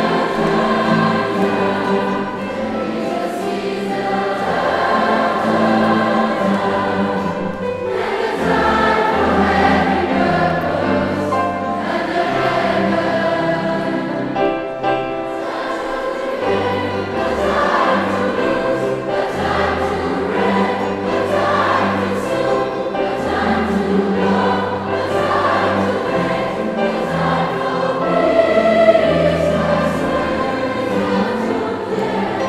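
Large youth choir of secondary-school pupils singing together with instrumental accompaniment, the sung lines moving over steady low bass notes that change every second or two.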